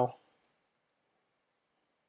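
The end of a spoken word, then near silence: room tone with one faint click about half a second in.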